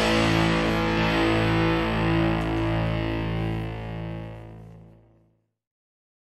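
The last held chord of a punk rock song on distorted electric guitar, ringing out and slowly dying away to silence a little over five seconds in.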